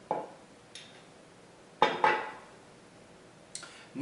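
Metal tablespoon clinking against a small ceramic bowl as oyster sauce is scraped off into it. There is a knock at the start, a louder double clink with a short ring about two seconds in, and a faint tap near the end.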